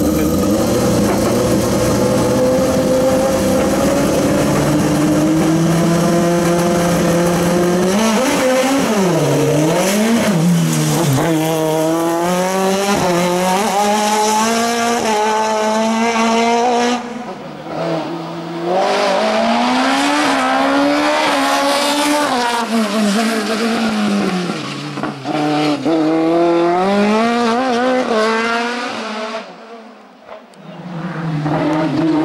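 Open-cockpit sport-prototype race car's engine running at a steady pitch for several seconds on the start line. About eight seconds in it begins revving hard, rising and falling again and again through quick gear changes as it drives the course.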